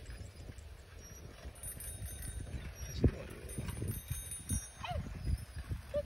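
Bicycles rolling up on a concrete path, with scattered knocks and rattles from the wheels and frames, the loudest a sharp knock about halfway through, over a low rumble.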